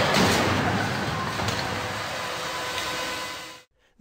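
Rushing, crunching noise of an extended-cab Ford Ranger's frontal offset crash test into the deformable barrier, steady at first, then easing off and fading out near the end.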